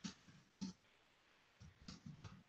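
A few faint, irregularly spaced clicks of computer keys being pressed, picked up by a meeting participant's microphone over near silence.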